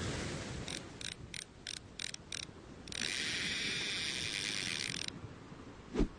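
Cartoon fishing-reel sound effect: six ratcheting clicks, about three a second, then a continuous whirring reel-in lasting about two seconds that cuts off suddenly.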